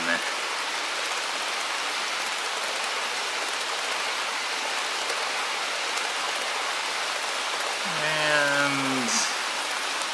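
Several HO scale model passenger trains running on the track at once, their wheels rolling on the rails in a steady, even hiss. A voice is heard briefly near the end.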